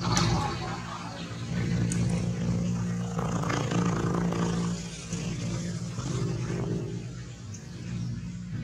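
A steady low motor hum that rises and falls a little in loudness, with faint voices in the background.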